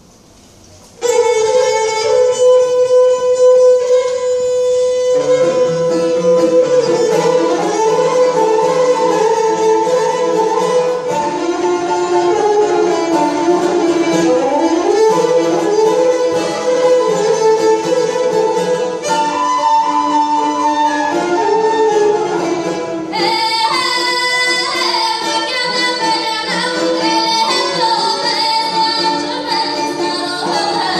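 Live Bulgarian folk music: an ensemble of gadulkas and other traditional instruments with a female folk singer. It starts about a second in with a long held note, the fuller ensemble joins a few seconds later, and a brighter, higher part comes in about two-thirds of the way through.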